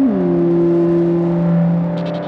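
Electronic synthesizer music: a sustained synth bass note slides down in pitch at the start, then holds steady over a layer of other droning tones.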